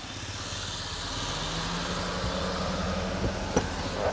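A motor vehicle's engine running close by, steady and growing gradually louder, with a single click near the end.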